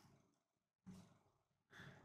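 Near silence, broken by two faint short breaths from a person, one about a second in and one near the end.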